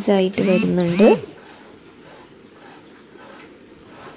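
Melting sugar bubbling in a pan as it caramelises over high flame: a faint, steady sizzle once a short stretch of talk ends about a second in.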